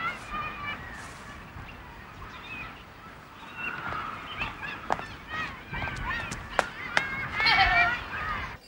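Outdoor ambience of distant high-pitched calls, with a few sharp clicks like footsteps on tarmac and a louder burst of calls near the end.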